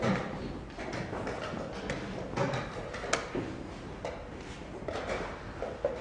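Irregular sharp taps and knocks of blitz chess play, the sound of chess pieces being set down on the board and the chess clock being pressed, over steady background room noise.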